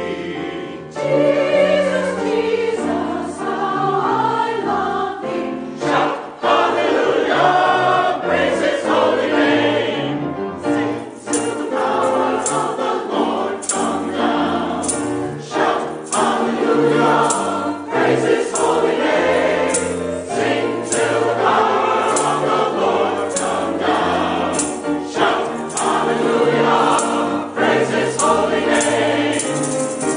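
Mixed choir singing a gospel anthem with piano accompaniment. About a third of the way in, a tambourine starts striking a regular beat.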